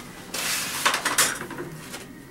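Rustling handling noise from plaster casting materials, one noisy stretch lasting about a second.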